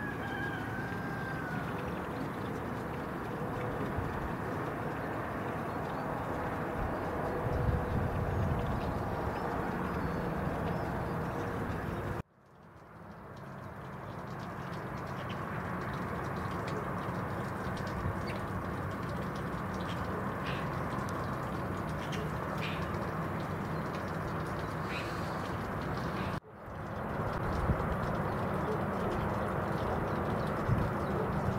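Outdoor ambience: a steady background hum with scattered short bird calls. The sound cuts out abruptly twice, about 12 and 26 seconds in, and fades back up each time.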